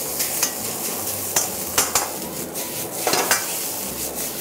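Rice sizzling in oil in a hot wok while a metal wok ladle stirs and pushes it around, with a few sharp scrapes and clinks of the ladle against the wok spread through the stir-fry.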